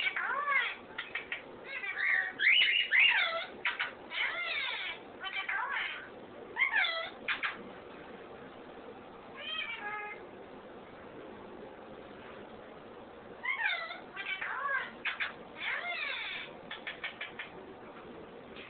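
Pet parrots calling: a run of short squawks and chirps that bend up and down in pitch. The calls come in clusters, with a quieter stretch in the middle and a fresh burst of calls a few seconds before the end.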